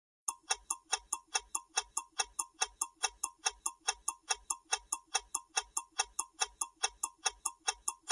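Clock ticking sound effect, quick and even at about four ticks a second, counting down the time left to answer.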